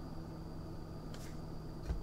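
Steady low electrical hum of room tone. A faint rustle of a trading card being handled comes about a second in, and a soft thump near the end as it is set down on the table.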